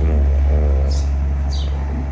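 Two short, high bird chirps, about halfway through and again near the end, over a loud steady low rumble.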